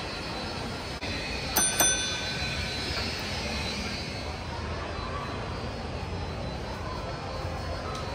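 Shopping-mall ambience: a steady background hum and murmur. About one and a half seconds in, two sharp metallic strikes in quick succession ring with a clear, bell-like tone for about a second.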